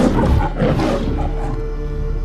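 A lion's roar in the manner of the MGM logo, in two surges that die away about a second in, over steady sustained background music.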